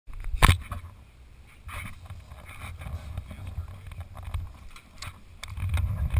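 Handling noise on a helmet camera: a sharp knock about half a second in, then scattered bumps and rubbing over a low rumble of wind on the microphone.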